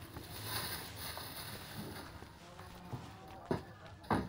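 Quiet background hiss with a few soft knocks and one sharper click about three and a half seconds in, as a hard-shell suitcase is picked up and carried off by hand.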